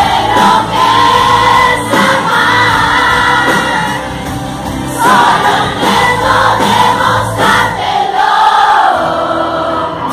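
Live pop song: a female lead singer backed by a band, with many voices from the audience singing along. The sung lines ease off briefly about four seconds in and again near the end.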